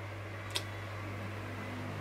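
Quiet room tone with a steady low hum, broken by a single short click about half a second in.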